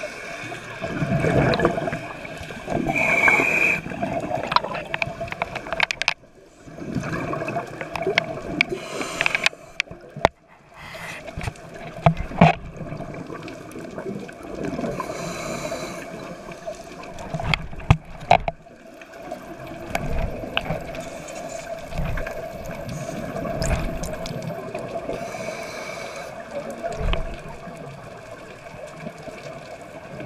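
Scuba diver breathing through a regulator underwater: exhaled air bubbles gurgle up past the camera in irregular surges every few seconds, over a steady underwater hum.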